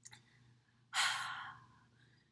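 A woman's hard, breathy exhale about a second in, fading out over most of a second: a sigh of strain while she holds a plank. A faint short breath comes just before it, at the start.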